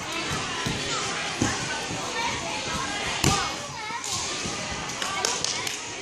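Children's voices chattering and calling in a large hall, with a few thuds of gymnasts landing on balance beams and mats, the loudest about three seconds in.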